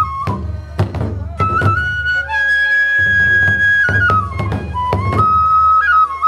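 Hōin kagura ensemble: a transverse bamboo flute (fue) plays a piping melody over steady strokes on two taiko drums. In the middle the flute holds one long high note while the drums pause briefly, then the drumming resumes.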